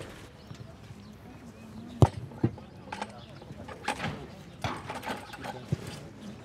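A few scattered sharp knocks, the loudest about two seconds in, over faint background voices.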